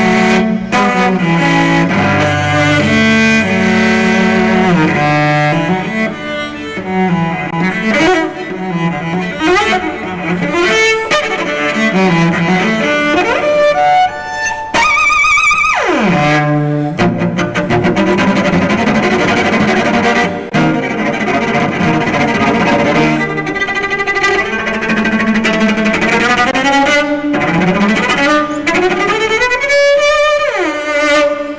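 Cello played with the bow in fast, quickly changing runs. About halfway through it holds a high note that then slides steeply down to the low register, and near the end a long upward slide climbs to a held note.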